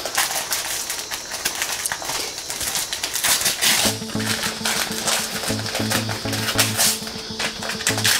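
Gift wrapping paper being torn and crinkled as a framed photo is pulled out of it. Background music with a repeating bass line comes in about halfway through.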